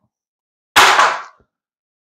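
One short burst of handling noise about a second in, lasting about half a second, as parts are moved on the plywood workbench.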